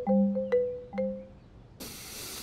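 Short cartoon music sting of a few struck mallet-percussion notes like a xylophone or marimba, each ringing and dying away within the first second. Near the end a burst of hiss starts.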